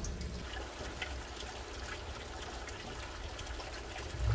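Water trickling steadily from the outlets of vertical aquaponics grow towers, falling into the tank below.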